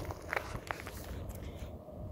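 Footsteps on desert gravel: a few soft crunches, about a third and two-thirds of a second in, over a low rumble.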